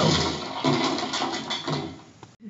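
Cartoon soundtrack from a TV picked up through a tablet microphone: a run of noisy crashes and cries as the characters are thrown around a room, dying down near the end.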